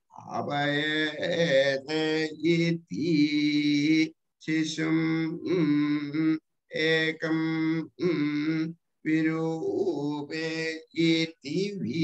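A man chanting Sanskrit Vedic verses on steady, level notes, in short phrases broken by sudden brief silences.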